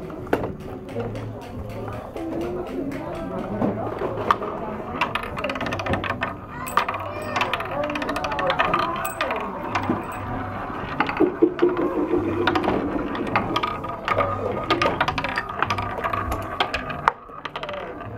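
Marbles rolling down a wooden marble-run tower, rattling over a ridged wooden track and clicking against the wooden ramps and rails, with many quick clicks throughout.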